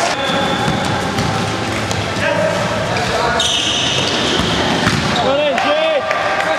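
Indoor football game in a hall: the ball knocks against the floor and boards, and players call out. A high steady tone sounds for about a second just past halfway, and short squeaks come near the end.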